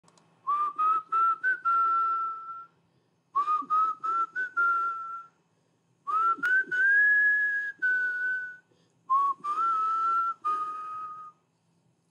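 A man whistling a tune through pursed lips in four short phrases. Each phrase is a few quick rising notes that end on a held note.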